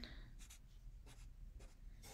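Faint scratching of a felt-tip marker on paper, in several short quick strokes as small marks are inked in.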